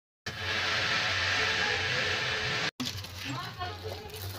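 A steady rushing noise with a low hum begins a quarter of a second in, runs for about two and a half seconds and cuts off abruptly; faint voices follow.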